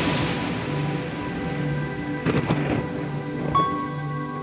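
Rain falling, with the tail of a thunderclap fading over the first second or so, under soft ambient new-age music with long held tones.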